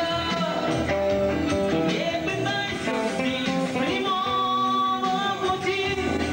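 Live rock band: a man singing into a microphone over electric guitar, played loud through a PA.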